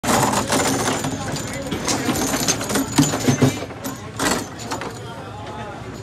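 Foosball match in play: sharp clacks and knocks of the ball and the plastic player figures striking as the rods are spun and slammed, loudest around three seconds in and again just after four. People talk over it.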